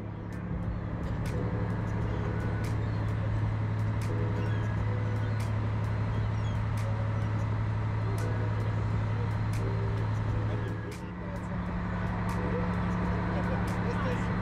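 A fishing charter boat's engine droning steadily, with faint voices of people on deck behind it. About eleven seconds in, the drone dips briefly and comes back as a higher hum.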